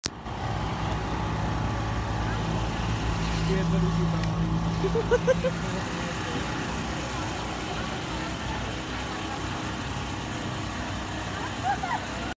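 Street traffic running steadily past, with people's voices talking in the background.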